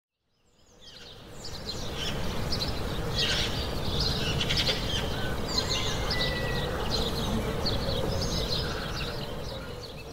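Many small birds chirping and calling over a steady outdoor background hiss. It fades in over the first couple of seconds and fades away near the end.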